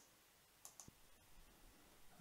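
Near silence, with a few faint short clicks about half a second to a second in.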